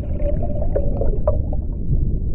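Underwater-themed intro sound effect: a deep, steady rumble with a wavering held tone and a few short sonar-like blips about a second in.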